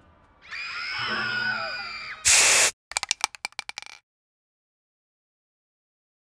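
Cartoon sound effect of the skulls of a house of living bones screaming: several thin, wavering high wails together. About two seconds in comes a loud, short burst of hissing noise, then a quick run of clicks that dies away.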